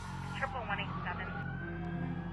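Emergency vehicle siren in a slow wail, its pitch sliding down and then back up, with a brief voice over it about half a second in.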